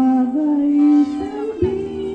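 Singing amplified through a PA loudspeaker: one voice holds long notes that step up in pitch a couple of times, with a short break shortly before the end.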